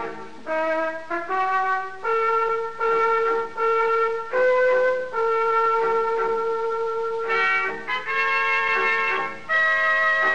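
Dramatic brass music bridge, led by trumpet, playing a slow phrase of long held notes.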